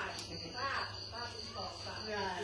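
Steady high-pitched insect trill, with faint voices talking underneath.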